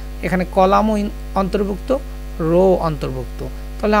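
A person speaking in short phrases over a steady low electrical mains hum in the recording.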